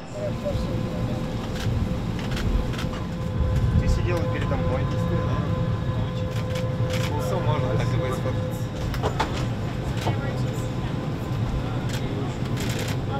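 Airliner cabin during boarding: a steady low hum from the parked aircraft, with a steady tone that stops about nine seconds in. Indistinct chatter of passengers and scattered clicks and knocks of bags and seats sound over it.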